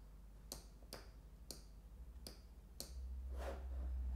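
Faint computer mouse clicks, about five short sharp clicks roughly half a second apart, as a map view is dragged and rotated on screen. A low hum grows stronger near the end.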